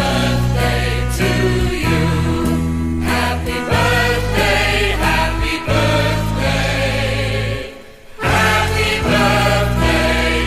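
Background music with singing voices: held sung notes over a steady bass line, with a brief drop in level late on.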